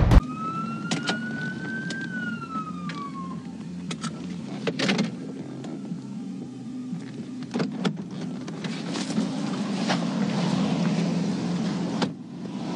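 Police car siren giving one wail, rising for about two seconds, then falling away and stopping, over the steady low hum of the idling cruiser, with a few sharp clicks scattered through.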